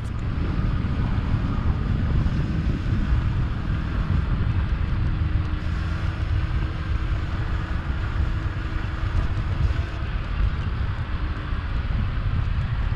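Steady wind noise on the microphone of a moving electric scooter (a Kaabo Mantis 10 Pro), with a faint steady hum from the scooter's motor under it.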